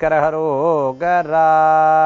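A man chanting a mantra in a sung, steady voice, with short wavering phrases that close on one long held note in the second half.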